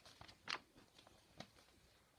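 Near silence: room tone, with two faint short rustles or clicks, about half a second in and again about a second and a half in.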